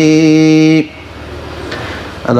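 A man chanting Arabic verse holds one long, steady note that stops abruptly just under a second in, leaving a low background hiss.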